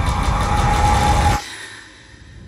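Thriller trailer sound design: a dense rumbling swell with a steady high tone over it, building a little and then cutting off suddenly about one and a half seconds in, leaving a much quieter fading tail.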